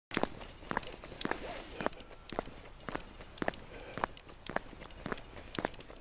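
Footsteps of a person walking on a paved road, a steady pace of about two steps a second.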